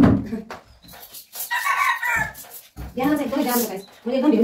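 A rooster crowing once, from about a second and a half in, followed by a person talking.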